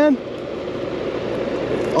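Steady outdoor background noise with a faint hum, slowly getting a little louder.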